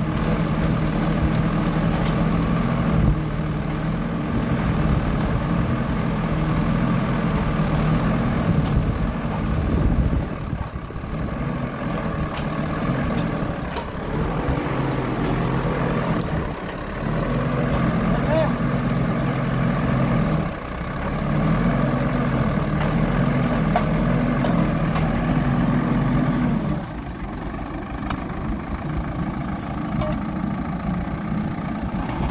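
Tractor engine running and driving a PTO-mounted post-hole auger as it bores into the soil. The engine note wavers and dips several times, and drops lower near the end.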